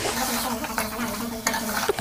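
Mutton pieces in oil and spice masala sizzling steadily in an aluminium pot while a metal spatula stirs and scrapes them through the pot, with a clink about one and a half seconds in.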